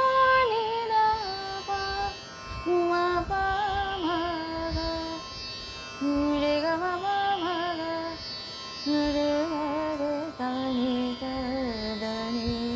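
A woman singing a Hindustani classical thumri phrase, holding notes and gliding between them with ornamented turns, with brief breaths between phrases. A steady drone sounds underneath.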